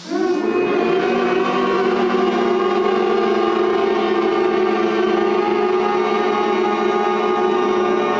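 A man's long hum with the mouth closed, sounded through the nose, starting abruptly and held steady at one low pitch throughout. It is a vibration-kriya 'nada' hum, made on a long breath.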